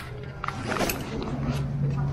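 Indistinct voices of people talking nearby, over a low steady hum that comes in partway through, with a few light knocks.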